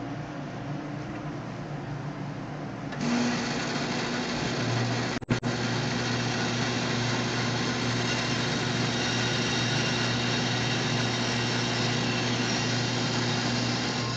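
A shop bandsaw starting up about three seconds in and then running steadily with a hum, over the steady noise of a running dust collector. The sound briefly cuts out about five seconds in.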